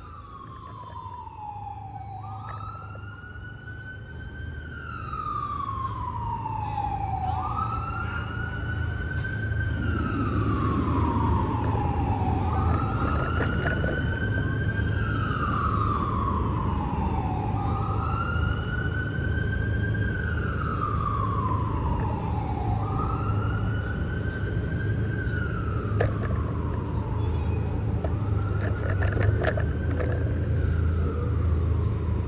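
Fire engine siren wailing in slow cycles, each rising quickly and falling slowly, repeating about every four and a half seconds and growing louder over the first few seconds, over a steady low rumble.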